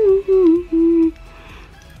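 A woman humming three falling notes, about a second in all, over faint background music.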